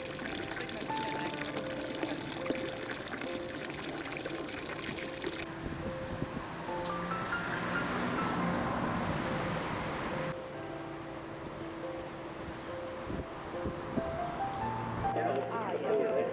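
A thin stream of water pouring from a wooden fountain spout and splashing below for about the first five seconds, over soft background music. After that comes a few seconds of a louder rushing sound, and voices start near the end.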